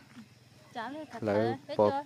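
Speech only: a voice talking in short phrases, starting about three quarters of a second in.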